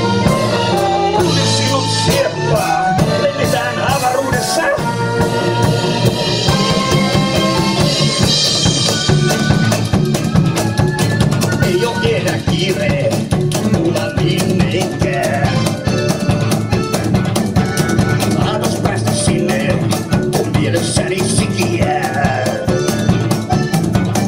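Live blues band playing an instrumental passage with a steady drum-kit beat, electric bass, electric guitar and accordion.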